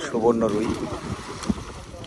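A man's voice briefly, then water splashing and sloshing as carp leap out of a seine net being hauled through a pond, with one sharp splash about one and a half seconds in.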